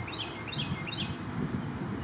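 A songbird singing a quick run of short, high, down-slurred chirps, about six a second, which stops a little after a second in, over a steady low background rumble.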